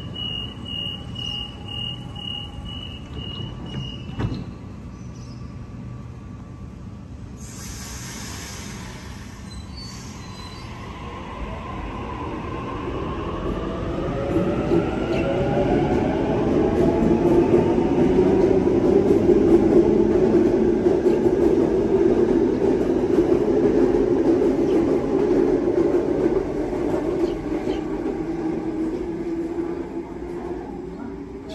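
Sydney Trains double-deck electric train departing: a quick repeated beeping door warning for about four seconds ends in a thud as the doors shut, and a brief hiss follows. The train then pulls away, its traction motors whining in rising pitch and growing louder to a peak past the middle, then slowly fading.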